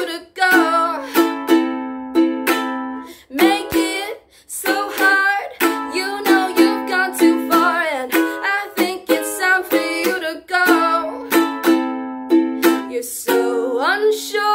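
Ukulele strumming chords in a steady repeating pattern, with a brief break about four seconds in.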